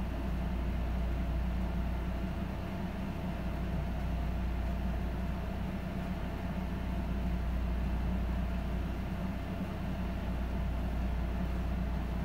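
Steady low hum with a faint hiss, unchanging throughout, with no distinct events.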